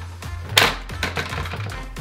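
Background music with a steady bass line. About half a second in there is one sharp plastic clack as the toy battleship's hinged sections are swung out and snap into place, followed by a few lighter clicks.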